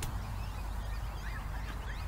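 Outdoor ambience with a low steady rumble and faint, thin bird calls in the distance. A single short click comes right at the start.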